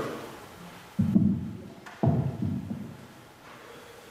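Two dull, low thumps about a second apart, each dying away over about a second.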